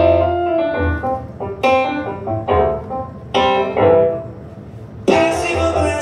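Solo piano part played on a stage keyboard: chords struck roughly once a second, each ringing out and fading, over low bass notes.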